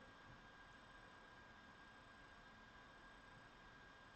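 Near silence: room tone, a faint steady hiss with a thin high tone under it.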